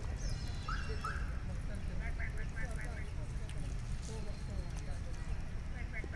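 Birds calling outdoors. A quick run of about five clipped notes comes twice, once a few seconds in and again at the end. A falling whistled phrase sounds near the start. All of it sits over a steady low rumble.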